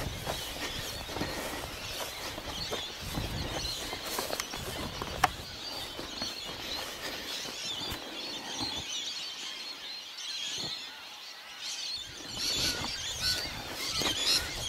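Rustling and brushing of people moving on foot through tall dry grass, with small knocks of a handheld camera and a sharp tick about five seconds in, over faint birdsong.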